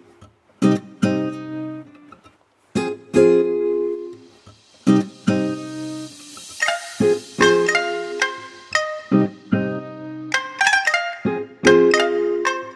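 Background music: strummed acoustic guitar chords in an even rhythm, with a brief hissing swell near the middle.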